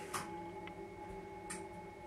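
Quiet room tone with a faint steady hum and three soft clicks spread through it.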